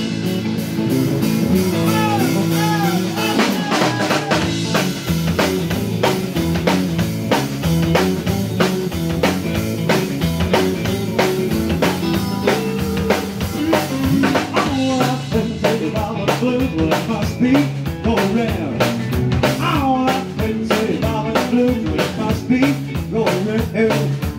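Live rockabilly band playing an instrumental passage: an electric guitar lead with short string bends over bass guitar and a drum kit keeping a steady, driving beat.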